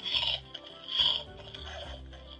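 Hey Duggee Smart Tablet toy playing its electronic music between spoken prompts, with two short bright sounds, one near the start and one about a second in.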